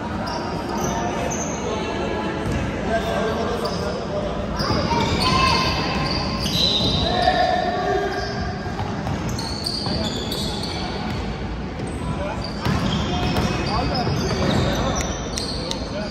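A basketball being dribbled on a hardwood gym floor, with short high shoe squeaks and players' shouts, all echoing in a large indoor hall.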